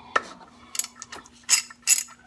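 Ratchet wrench with a 24 mm deep socket clicking as it breaks loose the transmission drain plug: a handful of short, sharp clicks spread over the two seconds.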